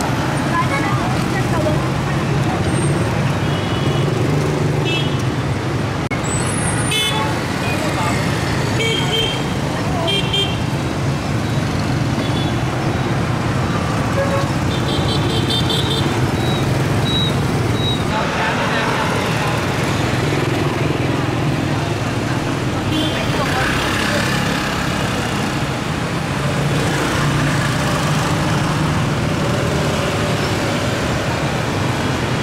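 Dense scooter and motorcycle traffic passing close by, a steady mix of small engines running, with short horn beeps several times in the first half.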